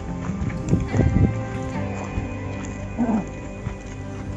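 Background music with several held tones, over a few irregular low thumps clustered about a second in.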